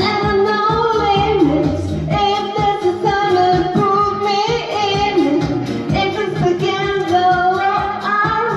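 A woman singing into a handheld microphone over a pop backing track with a steady beat and bass, holding long notes that slide between pitches.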